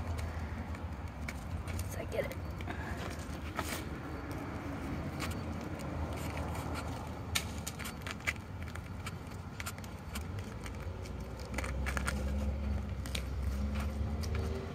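Green luffa skin being peeled off by hand, with scattered faint crackles, scrapes and clicks as the wet skin tears away from the fibres. A steady low traffic rumble runs underneath and swells near the end.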